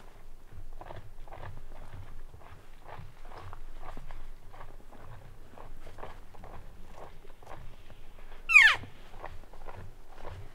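Slow footsteps through dry leaves and brush, about two to three steps a second. Near the end comes one loud, short call that slides steeply down in pitch.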